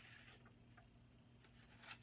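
Near silence: faint rustling of a sheet of printer paper being handled, mostly in the first half-second, over a low steady hum.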